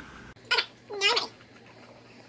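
A cat meowing twice in quick succession: a short call, then a longer one about a second in.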